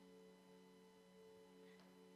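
Very faint background music: soft, steady held chords with no beat.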